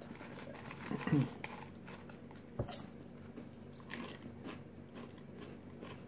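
Potato chips being bitten and chewed, with short crisp crunches scattered through; a throat is cleared about a second in.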